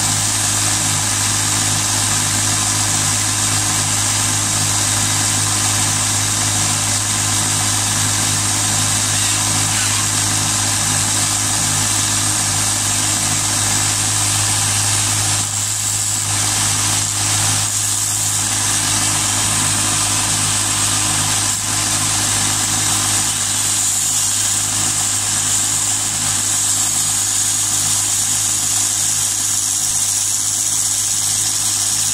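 Small bench belt sander running steadily, with a drill spinning a fishing-float body against the belt and a steady sanding hiss.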